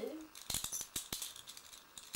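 Small round play-money tokens clicking together as they are counted and moved on a pile, a quick run of sharp clicks from about half a second to just past one second, then a few fainter ones.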